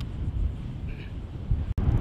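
Wind buffeting the microphone as a low, uneven rumble, cut off by a brief dropout near the end.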